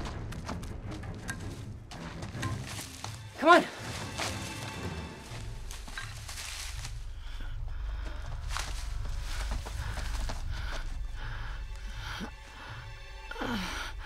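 Film soundtrack: a steady low rumble under faint score, with a short, loud falling voiced cry about three and a half seconds in and a lower falling vocal sound near the end.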